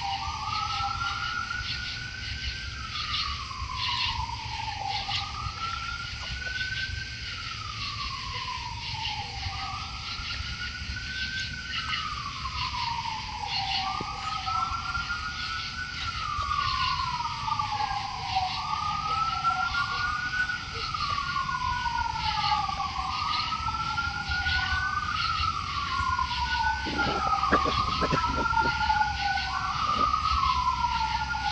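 Distant emergency-vehicle sirens wailing, each sweeping slowly up and down in pitch about every four seconds. About halfway through a second siren joins out of step with the first.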